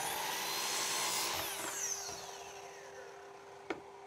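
Miter saw blade winding down after a cut through a pine board, its whine falling in pitch and fading as the blade coasts. A sharp click near the end.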